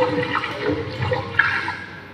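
A rushing, water-like noise that swells about one and a half seconds in and then fades, after a voice trails off at the start.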